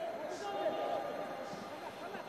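Faint, distant shouting of footballers on the pitch, heard through the open air of a stadium with empty stands.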